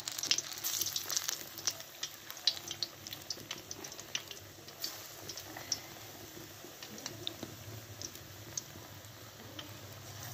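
Gram-flour-battered eggplant slices deep-frying in hot ghee in a karahi: a steady sizzle with many irregular sharp crackles.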